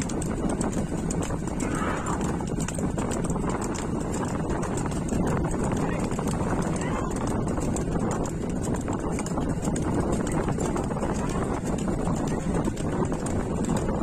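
Hooves of a pair of racing bulls clattering on a paved road as they pull a bullock cart at a run, over a steady rumble.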